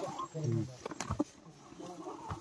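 Low, indistinct male voices in the first part, then a couple of sharp clicks about a second in, after which it goes quieter.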